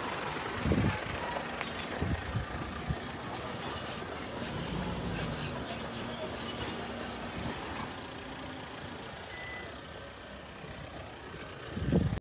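Steady outdoor rumble and hiss with a low engine-like hum, a few handling thumps in the first three seconds, and a low tone swelling and fading around the middle.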